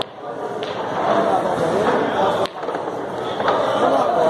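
A pool shot on a sinuca table: a few sharp clicks of the cue striking the cue ball and the balls knocking together, over people chatting in a large hall.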